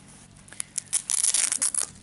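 A stitched nylon pick pouch being pulled open: a ripping, crackling sound that starts about half a second in and is loudest in the second half.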